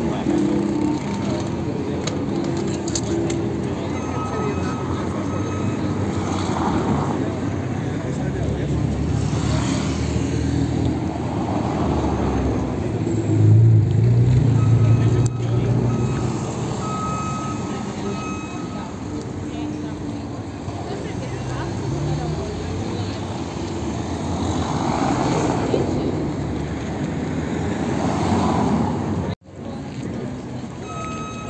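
Busy city street ambience: passers-by talking and traffic running. A car passes close about 13 seconds in, the loudest moment, and the sound drops out briefly just before the end.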